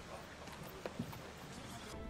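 Faint background ambience of a drama scene in a pause between lines, with a couple of soft knocks about a second in.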